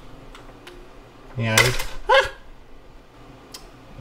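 ParaZero SafeAir parachute unit on a DJI Phantom 4 deploying unintentionally during handling: a sudden sharp pop about a second and a half in, with a man's short exclamation over it. Light plastic clicks from handling the unit come before and after.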